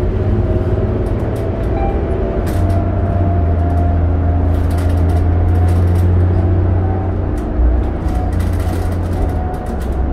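New Flyer D40LF diesel transit bus running while underway, heard from inside the passenger cabin: a steady low engine and drivetrain drone with a faint whine above it, which riders call not bad and fairly quiet for the fleet. A brief thud about three-quarters of the way through.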